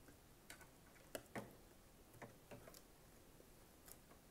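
Faint, scattered light clicks and taps of a clear acrylic quilting template being set back in place around a sewing machine's presser foot: about seven small knocks spread over a few seconds, with near silence between them.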